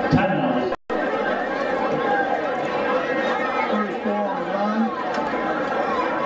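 Spectators' crowd chatter in football stadium stands: many voices talking over one another at a steady level. The sound cuts out briefly just under a second in.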